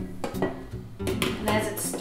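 Background music, with a few clinks and knocks of a stainless-steel mixing bowl being handled and fitted onto a stand mixer.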